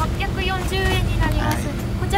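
Mostly speech: a woman talking, over a low steady rumble.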